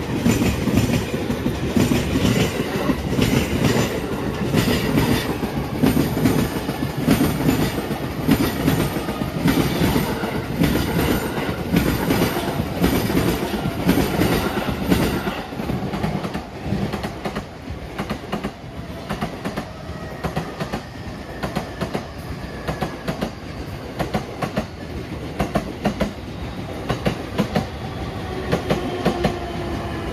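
Train wheels clicking over rail joints on the JR Utsunomiya Line, in a dense run of clicks. From about halfway the clicks become sparser and a little quieter, and a faint rising whine comes in near the end.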